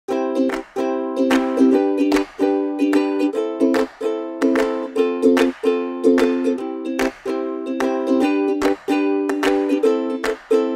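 Background music: a light tune of repeated chords with a steady rhythm.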